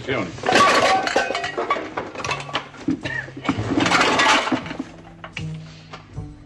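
Rummaging through a box of old belongings: two spells of clattering and clinking, one in the first second and a half and another around four seconds in, over soft background music.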